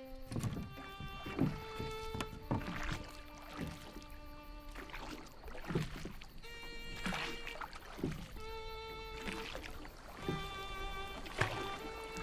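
Oars of a wooden rowboat dipping and pulling through water, a stroke every second or so, under slow, sustained music.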